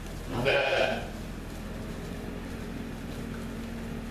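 A lamb bleating once, a short cry of about half a second near the start, over a steady low hum.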